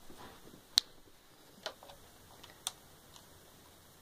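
Three sharp clicks about a second apart, the first the loudest, over faint room noise.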